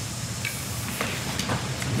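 Courtroom room tone through the broadcast microphone feed: a steady hiss with a faint low hum and a few faint clicks.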